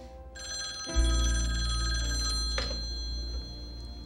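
Telephone bell ringing in one long ring of about two seconds, then fading. From about a second in, a deep, low music chord sounds under it and is the loudest sound here.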